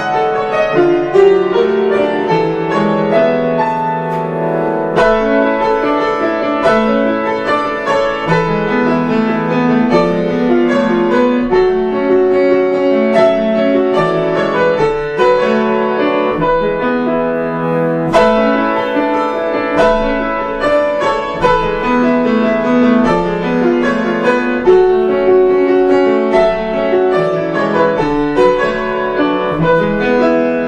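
Acoustic grand piano playing a solo original piece: flowing melody over sustained chords. Strong accented chords come about five seconds in and again about eighteen seconds in.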